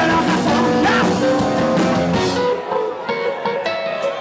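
Live rock band playing loudly. About halfway through, the drums and high end drop out, leaving a few held notes, before the full band comes back in.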